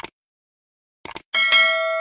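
Subscribe-button sound effect: mouse clicks, then a notification bell ding that rings on with a bright, steady tone.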